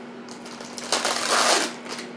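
Plastic Oreo cookie package crinkling as it is handled and opened, loudest a little past the middle.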